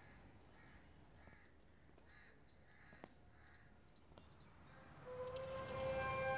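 Faint birds calling outdoors: soft calls repeating slowly, and in the middle a run of quick, high chirps that each drop in pitch. Soft music with held notes and light chimes comes in near the end.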